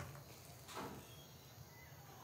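Quiet room tone, with one faint short sound about three-quarters of a second in.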